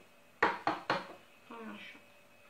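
An egg tapped sharply three times in quick succession against the rim of a small glass jar to crack its shell.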